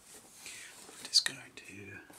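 A man whispering softly, close to the microphone, with a short sharp hiss about a second in.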